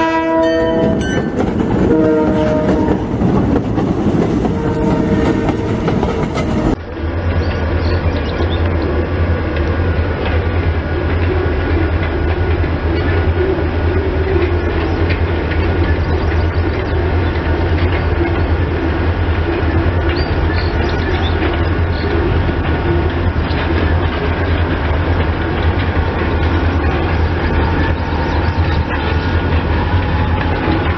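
An EMD GP40 diesel locomotive's air horn sounds as the freight passes a grade crossing: one long blast ending about a second in, then two shorter blasts. After a cut, a diesel freight train rumbles steadily at a distance with a low engine drone.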